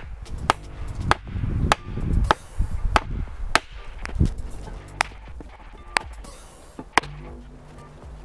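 Hammer blows on a wooden 2x8 board: sharp strikes about every half second to start, slowing to about one a second after the first four seconds.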